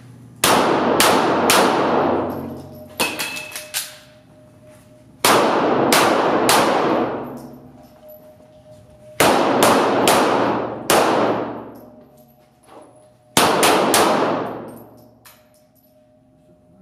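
Semi-automatic pistol fired in four quick strings of three to four shots each, every string trailing off in a long echo off the concrete walls of an indoor range.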